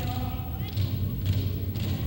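Inupiaq drum-dance song on a cassette field recording: voices hold one long sung note that ends under a second in, over repeated low thumps typical of large frame drums.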